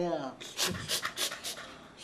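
A person panting: a quick run of about six short, breathy huffs in the space of a second, just after a voice trails off with a falling pitch.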